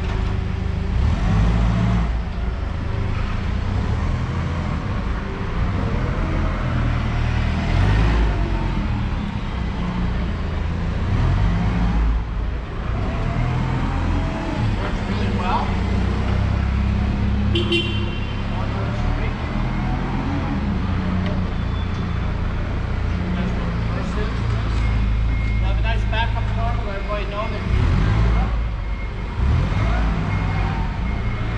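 Gasoline four-cylinder engine of a Toyota 7FGU25 forklift running as the truck drives around, its engine speed rising and falling.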